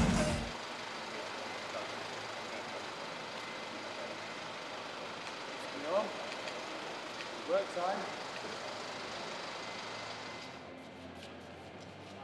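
Steady noise of a parked minibus idling, with a couple of brief snatches of voices in the middle. The noise drops away near the end.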